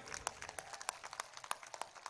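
Faint, scattered handclaps from a crowd: irregular sharp claps, a few a second, dying away.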